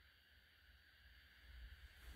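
Near silence: faint room tone in an empty house.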